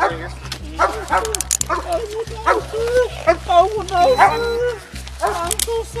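A dog barking repeatedly in short, sharp barks, over low background music.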